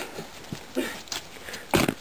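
A few faint scuffs, then one loud, short thump near the end.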